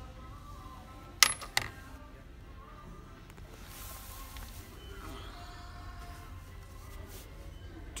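Loose small metal hardware clinking: two sharp clicks about a second in, from washers and nuts being handled in a store bin, over a low steady background hum.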